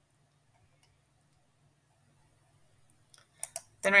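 A few sharp computer mouse clicks near the end, over a faint low hum and otherwise near silence.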